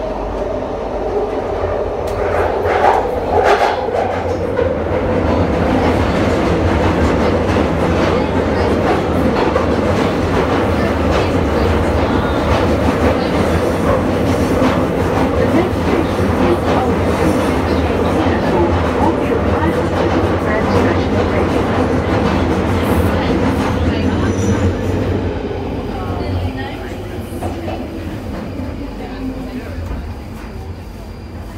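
London Underground Northern Line train (1995 stock) running through the tunnel, heard from inside the carriage: a loud, steady rumble with wheel-on-rail clatter. It grows louder a couple of seconds in and eases off near the end as the train slows for the next station.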